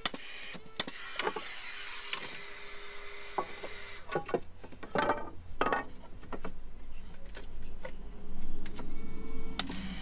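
Framing nail gun driving 90 mm ring-shank nails into a softwood loft frame: a run of sharp shots, roughly one a second, with a low rumble building in the second half.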